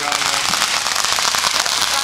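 A consumer firework crackling: a dense, rapid stream of small pops.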